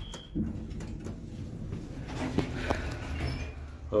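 Dover elevator (Sterling modernization): a short high beep as the basement button is pressed, then the sliding car doors and car machinery, with a few sharp clicks over a steady low hum.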